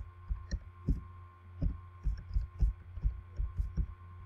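Computer keyboard being typed on: a quick, uneven run of about fifteen dull keystrokes over a steady low hum.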